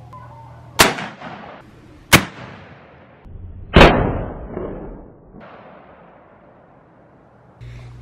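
Muzzleloading rifle fired from a shooting rest: three sharp gunshots about a second and a half apart, the last followed by the longest rolling echo.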